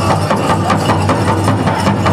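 Big powwow drum struck in a fast, steady beat, about four to five beats a second, driving a men's fancy dance song.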